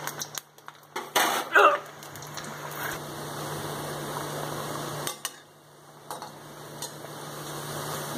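A slotted metal spoon clinking and scraping against a metal kadai in the first two seconds, then the steady fizz of balushahi dough frying in oil on a low flame, dipping briefly a little past the middle.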